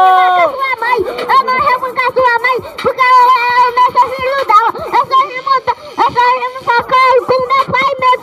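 Voice rapping into a microphone, amplified through a portable speaker, with a steady ringing tone running underneath.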